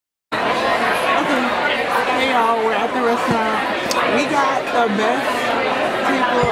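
Restaurant dining-room chatter: many overlapping voices talking at once, cutting in suddenly after a moment of silence.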